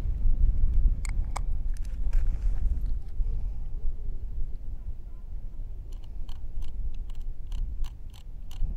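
Wind buffeting the microphone as a low, rumbling noise that rises and falls. Over it, a few sharp clicks about a second in and then a run of small clicks, about three a second, near the end, from a camera and ND filter being handled on a tripod.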